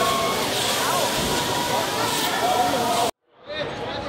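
Crowd hubbub of many voices mixed together, cutting off suddenly about three seconds in and then fading back up.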